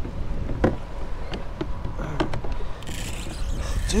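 Steady low rumble of wind on the microphone and choppy water against a kayak, with a few short clicks and knocks scattered through.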